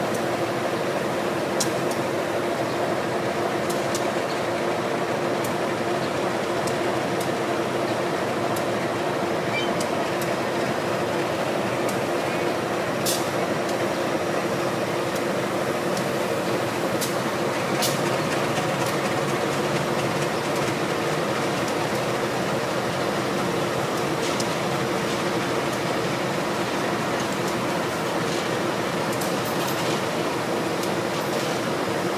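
GE diesel-electric locomotives running in a station yard, a steady engine drone, with a few sharp metallic clicks during shunting.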